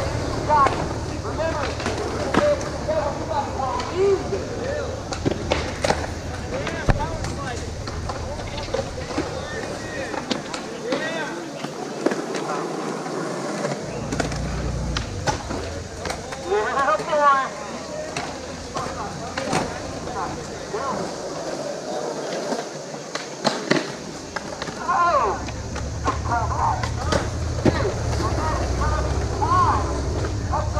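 Skateboards rolling on a concrete skatepark, with sharp clacks of boards and wheels hitting the concrete scattered throughout. People talk in the background.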